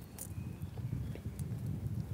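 A few light clicks and taps of a pen and a tape measure against a wooden profile board, over a low, uneven rumble.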